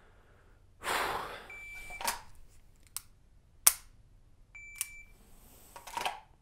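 A shot timer beeps once to start a three-second par time, then a pistol's dry-fire click is heard as the trigger is pulled on an empty gun; this sharp click is the loudest sound, about two seconds after the beep. The timer beeps again about three seconds after the first beep, marking the end of the par time, with rustling of clothing and holster around it.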